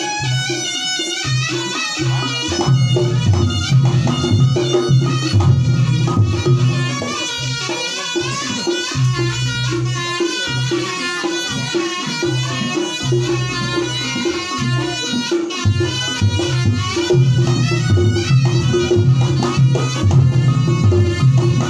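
Live Ponorogo reog-style traditional music: a wavering reed melody in the manner of a slompret shawm, played continuously over hand-drum beats on a large barrel drum (kendang) and lighter percussion.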